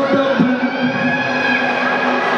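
A cheering squad's long held shout, one call at a steady pitch lasting nearly two seconds, over the noise of a crowd.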